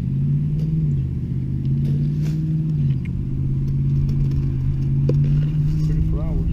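A motor engine running steadily with a low hum; its pitch drops about a second in and rises again near the end.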